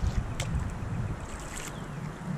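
Low wind rumble on the microphone while drifting in a kayak, with one sharp click about half a second in.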